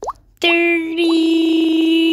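A quick rising cartoon 'bloop' sound effect, then, about half a second in, a voice starts holding one long, loud note on a single steady pitch, like a sustained hum or 'aaah'.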